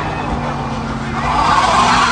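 A car engine running, heard from inside the cabin, with a rushing noise that swells to its loudest in the second half.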